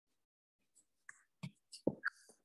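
A person's soft whispered voice close to the microphone in the second half, with two short, louder sounds about a second and a half in and just before the end.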